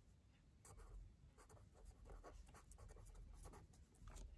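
A pen writing on paper: faint, short scratching strokes in quick succession, beginning about half a second in.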